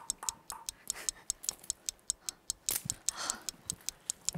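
Fast, even ticking of a clock-style timer, about six ticks a second, counting down the time in a timed game, with a few faint knocks alongside.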